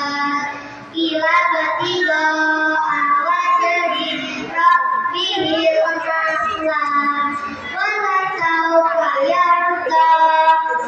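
Children singing a song together, in long held phrases, with a brief pause for breath about a second in.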